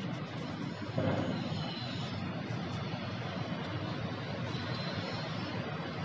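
Steady rumble of city traffic coming in through an open window high above the street, growing louder about a second in.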